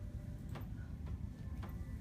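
Quiet instrumental backing track of a ballad between sung lines: a low steady accompaniment with soft ticks marking the beat about every half second.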